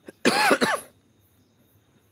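A man coughing twice in quick succession, short and loud, close to the microphone.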